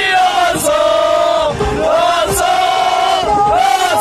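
A group of men chanting loudly in long, held notes.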